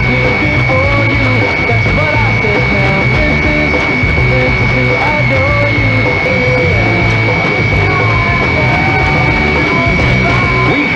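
Rock song with guitars playing as a radio broadcast received on AM medium wave, its sound dulled in the highs, with a steady high whistle running through it.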